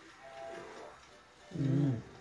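Pitch-shifted, heavily effected audio: a low, growl-like voiced sound with bending pitch, loudest near the end, over faint tones.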